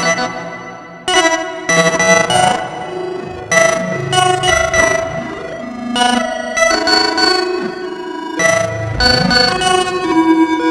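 Eurorack modular synthesizer playing a generative, quantised sequence: a shift register sends stepped pitches to several oscillator and filter voices. It plays bright, many-toned pitched phrases that start about every two and a half seconds and then die away.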